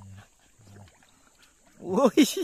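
A man's low hummed voice, brief and steady, then near quiet, and a man breaking into loud laughter just before the end.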